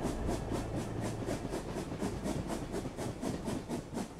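A train running fast over the rails, its wheels clattering in a quick, even rhythm of about five beats a second and slowly getting quieter.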